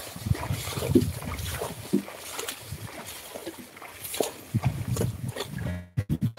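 A carabao (water buffalo) hauling a load along a muddy rice-field track, with irregular short animal sounds and occasional knocks.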